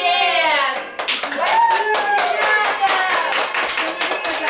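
A small audience of children clapping irregularly, starting about a second in, with voices over the clapping.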